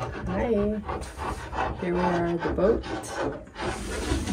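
A woman's short wordless vocal sounds, hums like 'mm-hmm', three of them, over steady rubbing and clicking handling noise.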